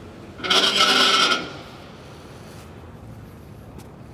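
A single rasping scrape lasting about a second, starting about half a second in. After it only a faint steady background remains.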